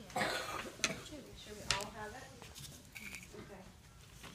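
Voices talking in a classroom, with a loud breathy burst just after the start and two sharp clicks, the first about a second in and the second under a second later.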